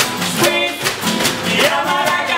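A homemade band plays: strummed acoustic guitar, a hand-shaken shaker and a frying pan struck with a stick keeping a steady beat, under a man's singing.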